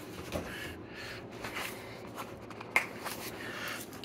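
Light handling noises and a few small clicks from a plastic parmesan cheese shaker being picked up and opened, with one sharper click near the end.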